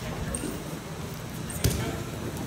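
Voices chattering in a gym during wrestling drills, with one sharp slap or thump on the mat about three-quarters of the way through.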